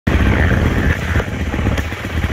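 Dirt bike engine running steadily.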